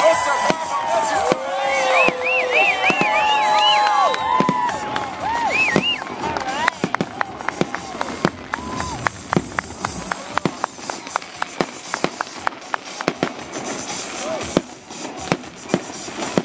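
A crowd whooping and cheering, many voices gliding up and down, for the first several seconds. Then dozens of sharp, irregular crackling pops from fireworks run through the rest.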